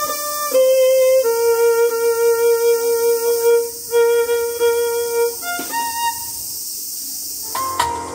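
Solo violin playing a slow melody of long, sustained notes. A keyboard and other instruments come in near the end.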